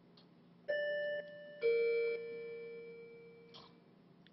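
Two-note doorbell-style chime, ding-dong: a higher note about two-thirds of a second in, then a lower, louder note a second later that rings on and slowly fades.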